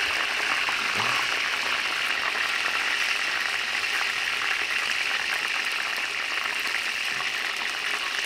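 Chicken pieces deep-frying in hot oil in a large metal pot, a steady sizzle with fine crackling.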